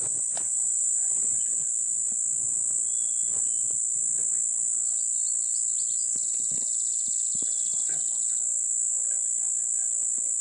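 Steady, high-pitched drone of an insect chorus. From about six seconds in, a second, faster pulsing trill joins it for about two seconds, and faint clicks and rustles are scattered through.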